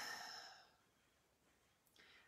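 A woman's breathy sigh trailing off and fading within about half a second, then near silence.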